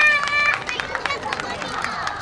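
Scattered hand claps from an audience dying away after a performance, with a high-pitched voice calling out for about half a second at the start and a few other voices.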